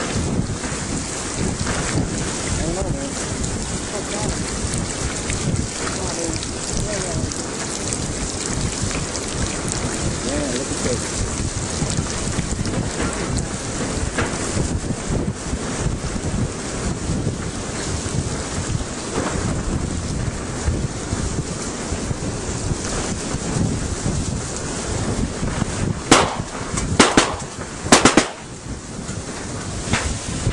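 Steady rumbling and rustling noise on the camera microphone, with a few loud knocks near the end.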